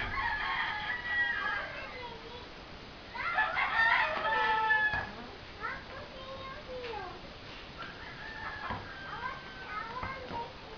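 A rooster crowing twice, each crow about two seconds long and ending in a falling note. Fainter calls and a few sharp knocks follow in the second half.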